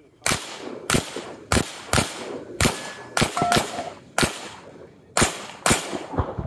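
A GSG Firefly .22 LR pistol fitted with a muzzle brake firing about ten rapid shots, roughly two a second, with an uneven rhythm as the shooter moves from target to target.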